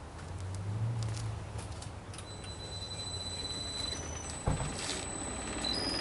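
A motor-driven homemade impact huller spinning up toward its operating speed (about 3,280 RPM): a low hum with a thin high whine that steps up in pitch as it speeds up. There is a single thump about four and a half seconds in.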